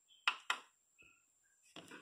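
Two sharp plastic clicks about a quarter second apart as the power button on the front of an LG DVD player is pressed and released, switching it on; a fainter click follows about a second in and another near the end.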